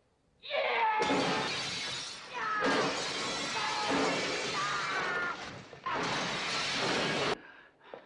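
Glass shattering and crashing in three long, dense stretches, each cutting off abruptly, with men's shouts and grunts over the crashes, as a fight smashes through glass.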